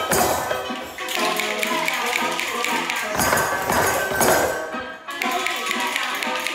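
A music track playing while many children tap small hand percussion along with it, a scatter of taps with jingling over the tune. The tune briefly drops away about a second in and again near the end.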